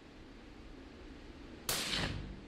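A single suppressed 300 Blackout rifle shot about 1.7 seconds in: one short, sharp report with a brief ringing tail. It comes from a Ruger American Ranch bolt-action in a chassis, fitted with a large suppressor, and is super quiet for a gunshot.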